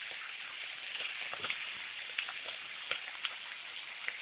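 Chopped green chillies frying in hot oil in a pan: a steady sizzle with scattered small pops and crackles.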